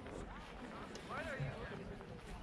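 Faint, distant voices calling out across an open baseball field, over a low steady background rumble.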